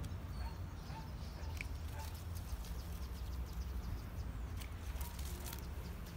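Steady low rumble of wind on the microphone, with faint bird chirps. A few light clicks from steel bypass pruning shears come about four and five seconds in.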